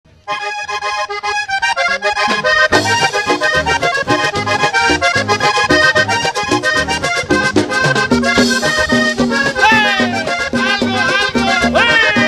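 Vallenato music played live: a button accordion opens alone for about two seconds, then the percussion and bass come in with a steady beat under the accordion.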